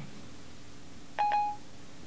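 iPhone's Siri chime: a short two-note electronic beep about a second in, marking that Siri has stopped listening and is processing the spoken question. Otherwise faint steady hiss.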